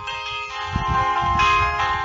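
Background music in a gap in the narration: several held tones sounding together over a recurring low beat.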